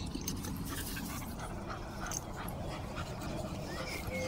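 Dog sniffing at the grass close to the microphone: a run of short, quick sniffs.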